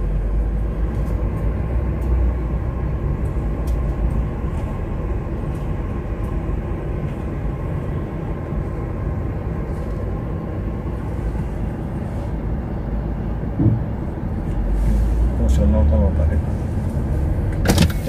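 Steady low engine and road rumble inside a car's cabin as it creeps forward in slow toll-gate traffic. There is a single short knock about 14 seconds in, and faint voices near the end.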